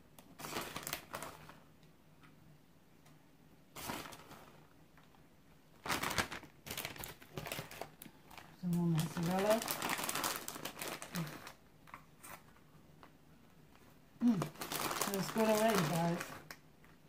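Plastic bag of shredded cheese crinkling in several short bursts as it is handled and shaken out by hand. A voice is heard briefly twice in the second half.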